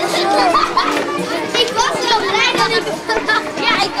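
Many children's voices chattering and calling out at once, high-pitched and overlapping, from a group of young children walking together.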